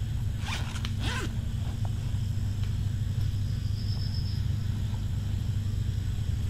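Zipper of a backpack pulled in two quick strokes, about half a second and a second in, over a steady low hum.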